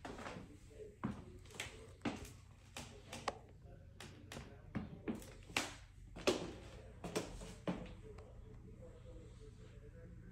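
Footsteps on a hardwood floor and wooden stairs, irregular, about two steps a second, stopping about eight seconds in.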